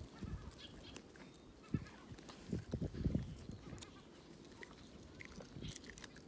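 A litter of puppies whimpering faintly, among scattered soft thumps and scuffles of paws and bodies.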